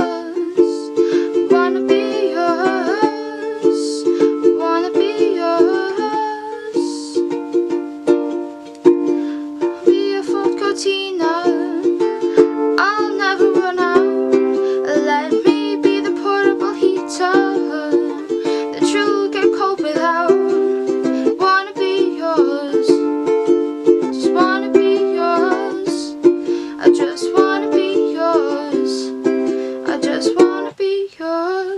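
Ukulele strummed in chords, the strokes steady and frequent, in a small room.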